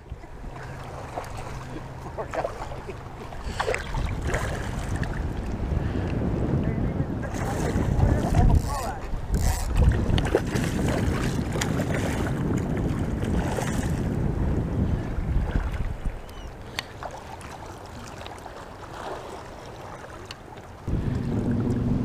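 Wind buffeting the microphone over choppy water lapping around a wading angler, with a few sharper splashes about eight to ten seconds in.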